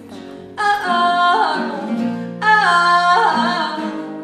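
A young woman singing a pop song, holding two long notes, over guitar accompaniment.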